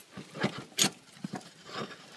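Handling noise: a few short scuffs and rustles, the loudest about half a second in and just under a second in, as a hand grips and moves a lawn tractor's front tire.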